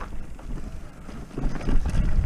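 Wind buffeting the microphone over the rumble of a mountain bike's tyres and frame rattling across a rough grass-and-stone trail, with a few knocks. The rumble eases off in the middle and picks up again near the end.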